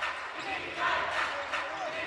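Live basketball game sound: a basketball bouncing on a hardwood court, with indistinct voices of players and spectators.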